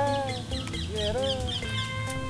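Two swooping animal calls about a second apart, with quick high chirps between them, over background music with steady held notes.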